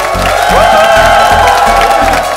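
Crowd cheering and clapping over background music with a steady beat.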